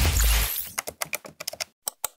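Animated-outro sound effects: a loud whoosh with a low boom, then a quick run of computer-keyboard typing clicks, about ten a second, ending in a mouse-style click near the end as a name is typed into a search bar and searched.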